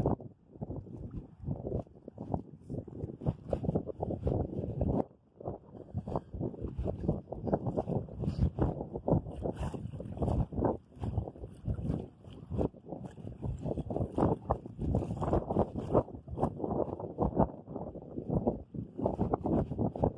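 Wind buffeting the microphone, a rough, uneven rumble that rises and falls in gusts.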